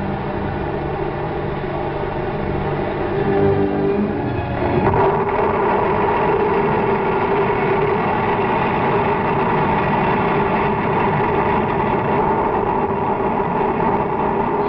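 Low droning tones from a 1950s TV drama soundtrack. About five seconds in, a loud, steady, engine-like roaring sound effect takes over.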